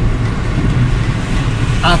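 Steady low rumble of a Toyota car's engine and road noise, heard from inside the cabin while it is being driven.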